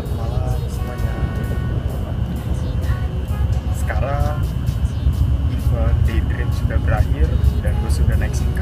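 Steady low rumble of a passenger train in motion, heard from inside the carriage, with a man talking over it now and then.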